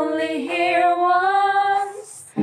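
Girls singing together, unaccompanied: one long held note that rises slightly in pitch, breaking off near the end.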